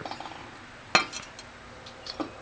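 A steel revolver cylinder set down on a hard stone surface: one sharp metallic clink about a second in, followed by a few faint ticks.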